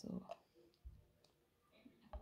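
Near silence with a few faint clicks and a soft low thump from a plastic container with a spoon in it being handled.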